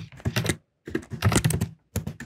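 Keystrokes on a computer keyboard, typed in quick bursts of clicks with short pauses between them.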